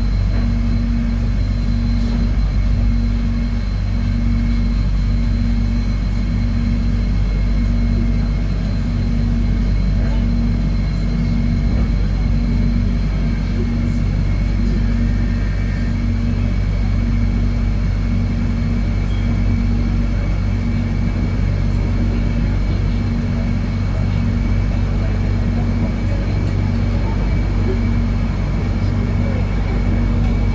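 Steady running noise heard inside the carriage of an electric airport train moving at speed: a deep rumble with an evenly pulsing hum and a faint, steady high whine.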